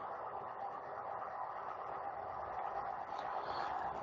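Faint, steady background hiss with nothing else in it: the room tone of a voice recording.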